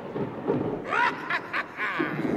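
A stage thunder sound effect rumbling away after a thunderclap. From about a second in, high-pitched giggling breaks in over it.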